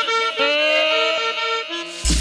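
Recorded cumbia music: an accordion playing a melody of held notes on its own, with no bass or drums under it.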